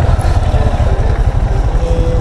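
Motorcycle engine running as the bike rolls along at low speed, under a heavy low rumble of wind on the microphone.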